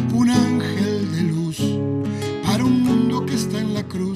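Music: an acoustic guitar strumming chords in a song, with several chord strokes through the stretch.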